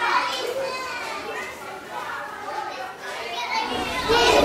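Many young children's voices talking and calling out at once: the general hubbub of a busy classroom.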